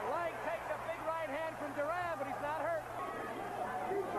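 Voices speaking over a steady low hum.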